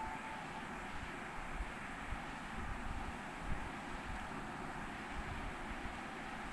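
Steady background noise, a low rumble and even hiss, with the faint tail of a ringing tone dying away in the first half-second.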